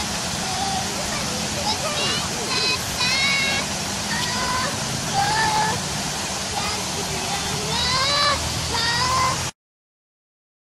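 Steady rush and splash of Buckingham Fountain's water jet, with high-pitched voices calling out over it; the sound cuts off abruptly near the end.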